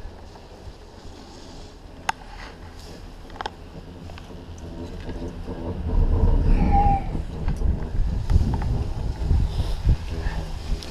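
Ride noise on a moving bubble chairlift: a few sharp clicks, then a loud, fluctuating low rumble from about six seconds in, typical of wind buffeting the microphone together with the lift's running gear. A brief squeak sounds near the middle of the loud stretch.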